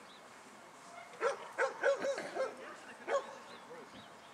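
A dog giving a quick series of short, high yipping barks, about six in a second and a half, then two more single barks near the end.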